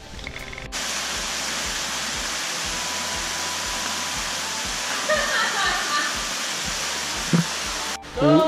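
Steady rushing of water from a mini-golf course's water feature, starting abruptly just under a second in. Faint voices come through in the middle, and a single short knock sounds near the end.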